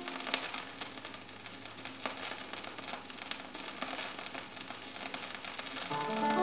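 Vinyl LP surface noise in the silent groove between tracks: a soft hiss with scattered crackles and pops under the stylus.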